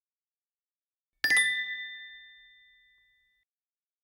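Bright bell-like chime sound effect, struck about a second in with a quick double hit, ringing out and fading away over about two seconds.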